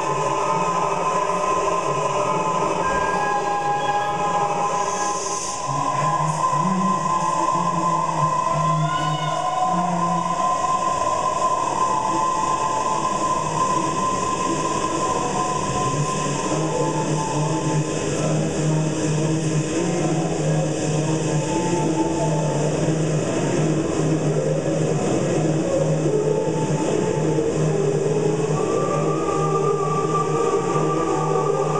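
Layered voices looped live into a sustained drone: a low hum and long-held higher notes over a dense, rushing wash of sound.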